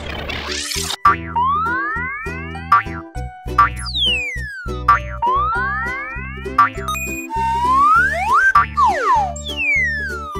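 Upbeat children's background music with a steady beat, overlaid with cartoon sound effects: a whoosh at the start, then a string of springy boing glides, some rising and some falling in pitch, crowding together near the end.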